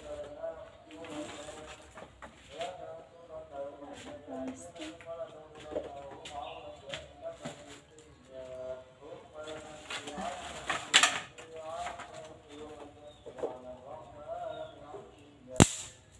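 Sharp snaps of dry sticks being handled and fed into a wood fire in a clay stove, a strong one about eleven seconds in and the loudest just before the end, with calls in the background throughout.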